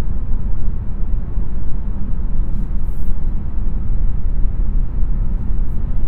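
Cabin road and wind noise in a 2021 Volvo V90 Cross Country cruising at 70 mph: a steady low rumble with a faint hiss above it, called very refined and very quiet.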